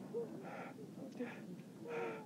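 People gasping for breath with short, strained, wavering groans, struggling for air while buried in avalanche snow. Breathy gasps come about three times.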